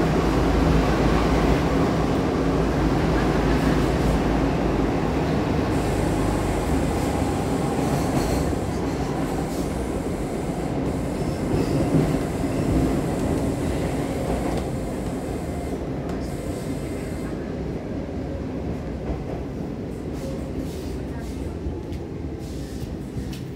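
Stockholm metro C14 car running through a tunnel, heard from inside the carriage: a steady low rumble of wheels and motors. The rumble grows gradually quieter and duller as the train slows toward the next station.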